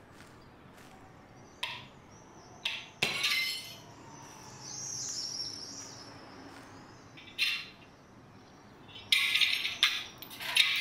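Hammer striking and breaking glass on cobblestones: several sharp blows with glass clinking, the loudest run of breaking near the end. A bird chirps briefly in the middle.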